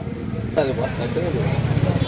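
A person's voice, with the steady, pulsing low rumble of a motor vehicle engine running alongside it and growing stronger near the end.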